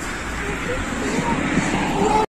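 A steady engine rumble that slowly grows louder, with faint voices behind it.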